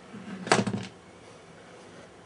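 A screwdriver picked up off a hard floor beside loose screws: a brief clatter of several quick clicks about half a second in.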